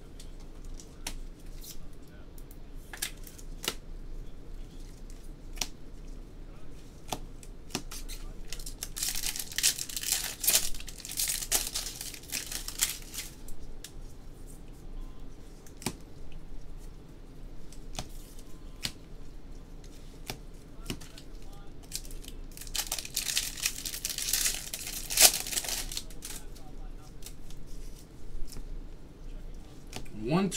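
Trading-card pack wrappers of 2019 Bowman Jumbo packs torn open in two stretches of ripping, each a few seconds long, about a third of the way in and again near the end. Between the tears, cards click and slide against each other as they are flipped through by hand.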